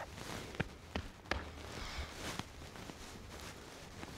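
Faint footsteps of a person and a horse walking on soft arena footing, with a few light ticks among them.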